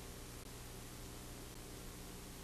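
Steady hiss with a low hum from a blank stretch of VHS tape, with no programme sound on it.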